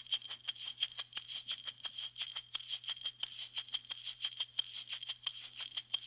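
Wooden cylinder shaker filled with small metal beads, played with the basic horizontal back-and-forth technique. It gives a steady, even rhythm of short, crisp rattling strokes.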